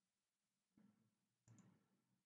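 Near silence broken by faint computer mouse clicks: one a little under a second in, then a quick pair about a second and a half in.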